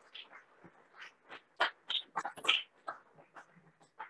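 Faint, scattered applause from a small audience: a few hands clapping unevenly, picking up about a second in.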